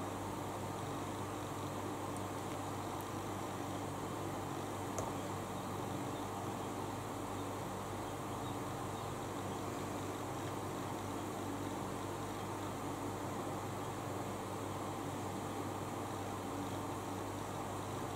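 Steady hum and hiss of an electric fan running, with one faint tick about five seconds in.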